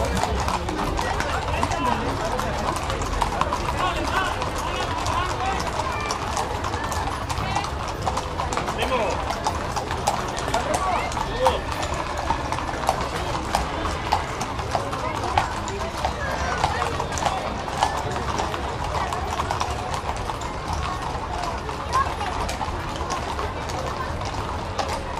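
Many horses walking on a paved street, their hooves clip-clopping in a dense, uneven patter of clicks, with a crowd chattering throughout.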